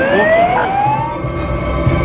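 A siren wailing: its pitch falls, then rises again and breaks off just over a second in. Music comes in near the end.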